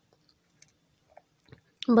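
A few faint, soft squishes of a hand mixing mashed boiled potato with chopped herbs in a pan. A woman's voice starts near the end.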